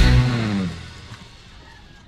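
Background rock music that stops just after the start and dies away over about half a second, leaving a quiet gap before the music starts again at the very end.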